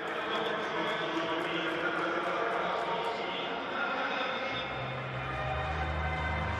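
A person's voice over a busy background, with music and a steady bass line coming in about four and a half seconds in.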